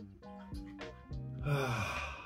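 Background music with a steady beat. About one and a half seconds in, a man lets out a loud, breathy "aah" that falls in pitch.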